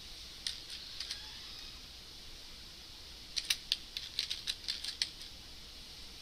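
Typing on a computer keyboard: a few separate keystrokes in the first second or so, then a quick run of keystrokes past the middle.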